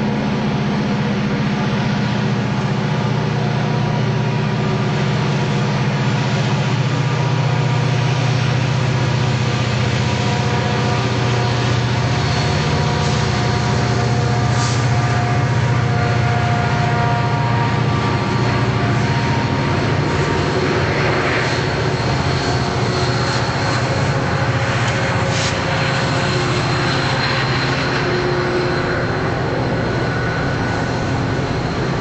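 A mixed freight train rolling past on the track: a steady, loud low rumble of wheels on rail, with thin high-pitched wheel squeals coming and going and a few brief clicks.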